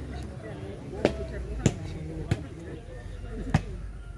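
Plastic volleyball being struck in play: four sharp smacks, the first about a second in and the last a little over a second after the third.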